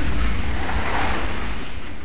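Heavy rain with the low rumble of close thunder slowly dying away.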